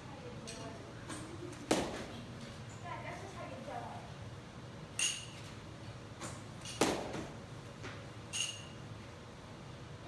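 A bat striking balls during hitting practice: two loud, sharp cracks about five seconds apart, with two fainter ringing pings between and after them.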